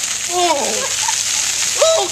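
Ice water pouring out of two plastic storage tubs and splashing over a man's head and shoulders: a loud, steady rush of water. Voices cry out over it, one falling cry about half a second in and another near the end.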